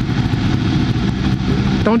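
Motorcycle engines idling in a queue, the nearest the Ducati 1299 Panigale S's L-twin, giving a steady low rumble.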